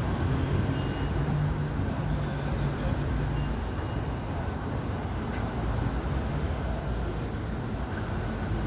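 Steady city street traffic noise, with a low engine hum for a few seconds near the start.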